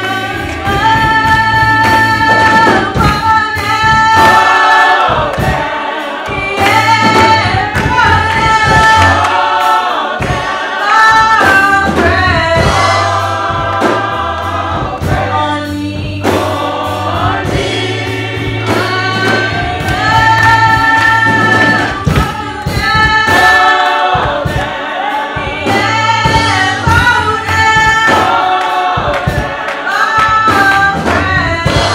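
Gospel singing by a church choir and congregation, sustained melodic lines over a steady bass accompaniment with regular percussive hits.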